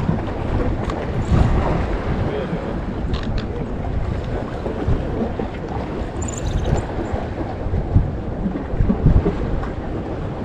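Wind gusting over the microphone as an irregular low rumble, with the wash of open sea water beneath it.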